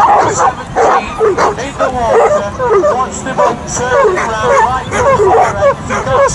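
Several dogs yelping and whining, many short rising-and-falling cries overlapping without pause, over a babble of people's voices.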